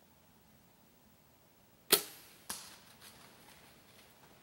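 Compound bow shot at a whitetail buck: a sharp crack of the string release, then about half a second later a second, smaller smack of the arrow striking the deer. A few fainter rustles and snaps follow as the deer takes off through the leaves.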